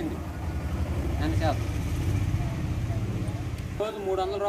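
A steady low motor rumble, like an engine idling, with a brief voice fragment about a second in.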